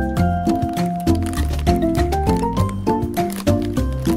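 Instrumental background music with a steady beat, a bass line and a melody of short notes, including a quick rising run a little past halfway.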